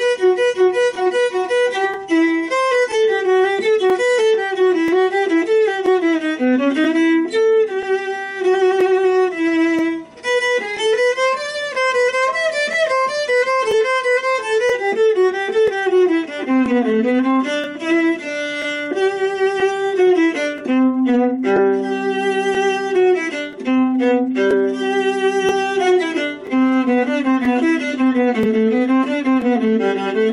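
Viola playing the Allegro of a G major sonata, a single line of quick running notes with a brief break about a third of the way through.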